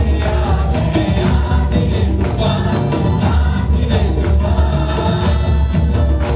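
Christian praise-and-worship song: voices singing together over a steady percussion beat, with hands clapping along.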